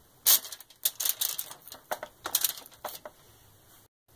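Aluminium foil crinkling in a series of short crackles as a raw beef roast is moved about on it.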